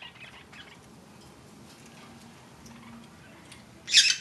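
Pet lineolated parakeets, mostly quiet, with a few faint soft chirps at the start and one loud, short, shrill call just before the end.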